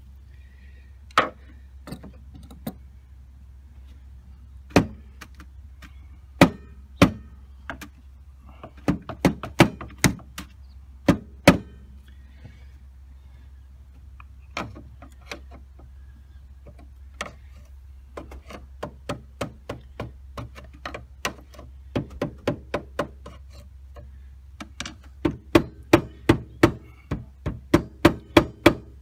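Rubber mallet knocking on the back cap of a 1996 GMC Suburban's windshield wiper motor to shake the stuck cap loose. At first the blows are single and sharp, a second or more apart, then come in quick clusters, with a run of about three knocks a second near the end.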